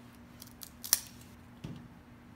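Cigar cutter snipping the cap off a cigar: a few small clicks, the sharpest about a second in, then a duller knock with a low thud shortly after.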